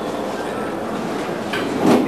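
Steady rushing background noise of a room, without speech, with a short louder burst near the end.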